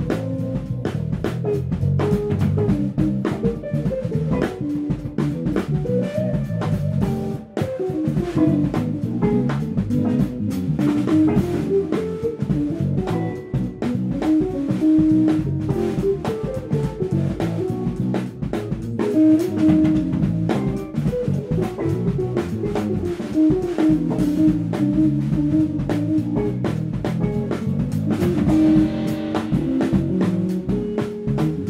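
Instrumental funk band playing live: two electric guitars, electric bass and a drum kit playing a groove together.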